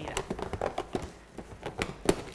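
Inflated latex balloons rubbing and creaking against one another as a cluster is handled and twisted into place: a string of short, irregular squeaks and taps.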